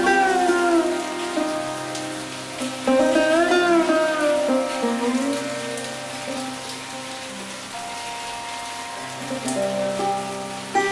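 Sitar music over steady rain: slow phrases of bending, gliding notes ring over sustained drone tones. A new phrase swells about three seconds in and then fades away toward the end.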